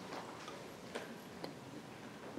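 Faint, regular ticks, about two a second, over quiet room tone.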